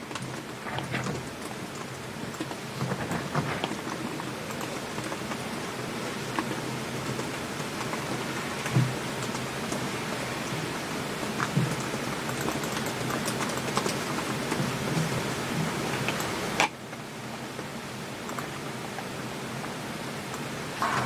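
A steady, rain-like hiss with faint scattered ticks that cuts off suddenly near the end.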